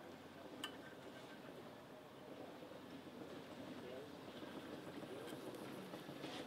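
Faint background ambience with distant voices, broken by a single small click about half a second in.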